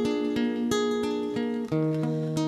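Acoustic guitar picking a slow melodic fill: a run of single plucked notes and chords, about three a second, each left ringing.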